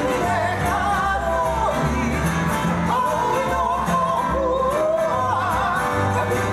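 A Hawaiian song accompanying hula: a singer's voice gliding between notes over a steady bass line.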